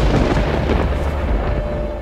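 Thunder-and-lightning sound effect: a crackling thunderclap over a deep rumble, loudest at the start and slowly dying away near the end.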